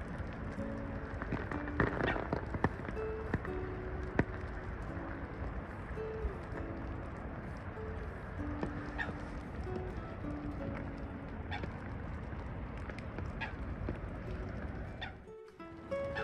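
Steady rain hiss with occasional sharp taps, under soft background music of short held notes. The sound drops out briefly near the end.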